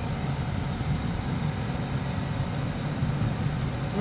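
Steady road and engine noise inside the cab of a vehicle driving along a road, an even low rumble with tyre hiss.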